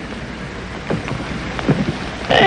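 Steady background hiss and low hum, with a few faint short sounds about a second in and near the end.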